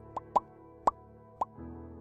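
Four short, rising 'bloop' pop sound effects in the first second and a half, of the kind laid over an animated like/follow/notification button graphic, over a quiet background music bed.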